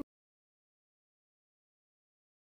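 Digital silence, after the last syllable of a spoken word cuts off right at the start.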